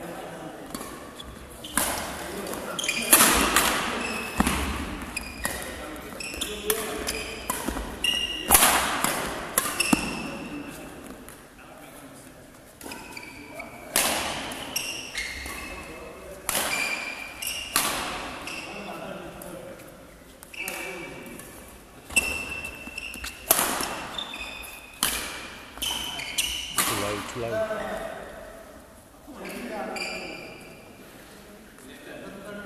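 Badminton rally: rackets striking a shuttlecock in a string of sharp smacks, irregularly spaced a second or two apart, echoing in a large sports hall.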